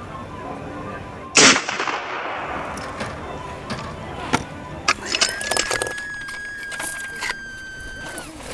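A single rifle shot about a second and a half in, sharp, with a ringing tail. It is followed by a few sharp clicks and, from about five seconds in, a steady high tone held for about three seconds.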